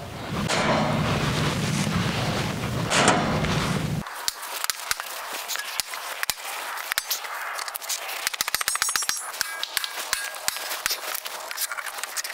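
Powder-coated aluminum column-wrap extrusions being knocked together with a mallet to press-fit the snap-lock channel. A rushing noise with one louder knock gives way, about four seconds in, to a quick, irregular run of sharp metallic taps and clicks, some ringing briefly.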